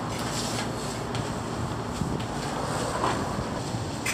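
Steady rushing noise in a self-serve car wash bay, with a foam brush scrubbing a soapy car's side panels.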